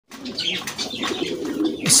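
Caged pigeons cooing in a low, warbling run, with fainter high chirps over it.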